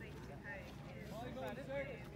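People talking in the background, over a steady low rumble.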